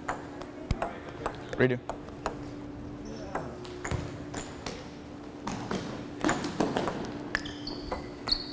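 Table tennis rally: the celluloid ball clicking sharply off the paddles and table, a quick, irregular run of taps about every half second, over a steady low hum.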